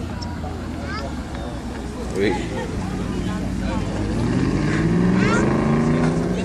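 Audi R8 supercar's engine pulling away gently at low speed, its note rising and growing louder as the car comes close past.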